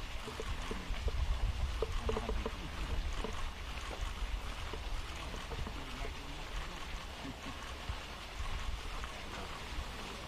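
Steady outdoor background noise with a low rumble, like wind on the microphone, and a few faint, indistinct voices in the first few seconds.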